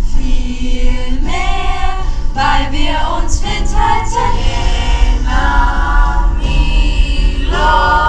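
A large youth choir of boys and girls singing together, with several notes held and others moving in quick steps.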